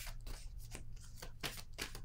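Tarot cards being shuffled by hand: a quick series of short rustles, about three or four a second, over a low steady hum.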